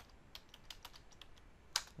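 Computer keyboard keys tapped in a quick, irregular run while a password is typed, with one louder click near the end.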